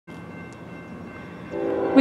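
Norfolk Southern freight locomotive horn sounding a steady chord, faint at first and growing much louder about one and a half seconds in.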